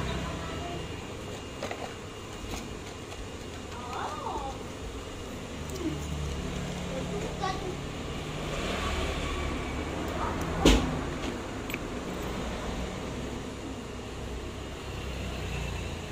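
Steady low background rumble with faint distant voice-like sounds, and small clicks of a metal wristwatch case being handled on the bench; one sharp knock about ten and a half seconds in is the loudest sound.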